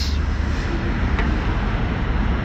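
Steady background noise: a low rumble under an even hiss, with one faint click about a second in.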